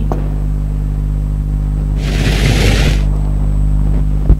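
Steady low electrical hum, with a rush of noise lasting about a second around the middle.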